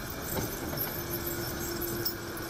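Caterpillar 140M motor grader driving past on a snow-packed road, its diesel engine running steadily, with the clinking of the chains on its tyres.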